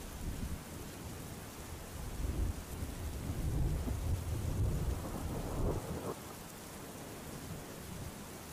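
Steady rain with a low rumble of thunder that builds about two seconds in and fades out about six seconds in.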